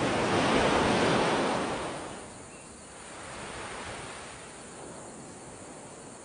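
A gust of wind rushing through garden foliage: a rising and falling whoosh that peaks about a second in, followed by a weaker second gust.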